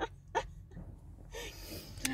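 A woman's breathing between sentences: two short breaths in the first half second, then a soft inhale near the end.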